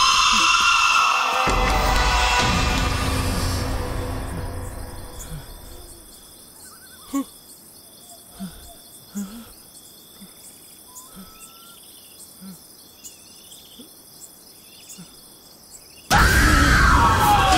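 Film score music fades out over the first few seconds. It leaves steady night-time cricket chirping, with a few scattered soft knocks, the loudest a little after seven seconds in.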